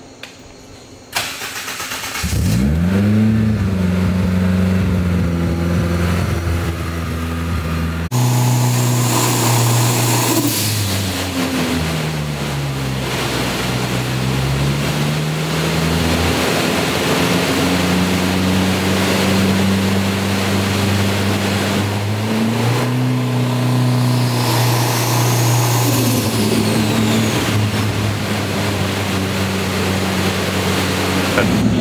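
Turbocharged Honda K20 four-cylinder engine in a Mazda RX7 on a hub dyno, starting about two seconds in and then running at light, steady load for drivability tuning. Its pitch dips and rises slowly midway, and a high whistle rises and falls near the end.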